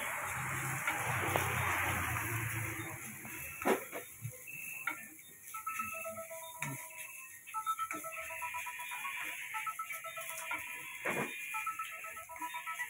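Rice stir-frying in a wok: a noisy sizzle at first that fades, with sharp clicks of the metal spatula against the wok. From about four seconds in, a simple electronic tune of short single notes plays, like a ringtone.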